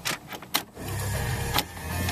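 A few sharp clicks from the key fob and start button, then about a second in the 2011 VW Passat BlueMotion's 1.6-litre diesel engine starts and settles into a steady idle.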